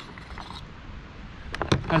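Metal parts of a CZ 1012 12-gauge inertia-driven semi-automatic shotgun being handled during assembly: a sharp click at the start, a couple of faint clicks about half a second later, then a few more small clicks near the end.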